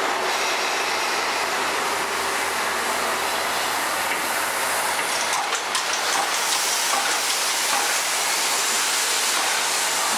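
JNR C57 180 Pacific-type steam locomotive giving off a steady hiss of steam, with a few sharp metallic clicks about halfway through.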